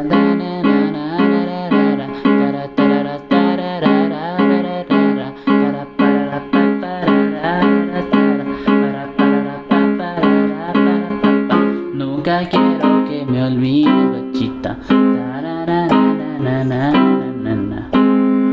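Yamaha PSR-E223 portable keyboard playing the chords and melody of a cumbia tune. Chords sound in an even rhythm, about two a second, with a melody line over them; the pattern grows more varied about twelve seconds in.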